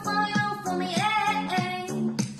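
A woman's singing voice holding long notes over a pop backing track with a steady beat.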